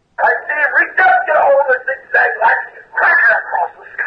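Speech only: a voice talking steadily, thin and boxy as if over a telephone line.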